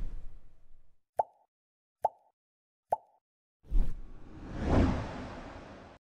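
Sound effects of an animated subscribe end card: a thump dying away, then three short, identical cartoon pops a little under a second apart. Near the end comes another thump and a swelling wash of noise that fades out.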